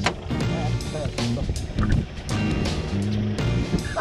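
Background music with a steady beat and a held bass line.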